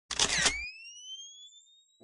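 Camera sound effect: a short shutter-like burst of noise, then a thin rising whine, like a flash recharging, that fades away over about a second.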